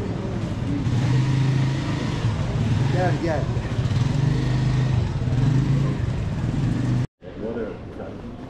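Motorcycle engine running close by with a steady low hum, over the chatter of a street crowd; the sound cuts off suddenly about seven seconds in.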